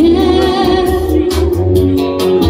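A woman singing into a microphone over backing music through a stage PA, holding one long note with a slight waver, with a steady bass pulse underneath.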